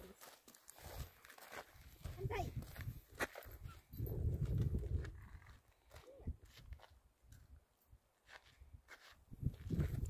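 Faint, irregular footsteps on a gravel road, with a few low rumbles.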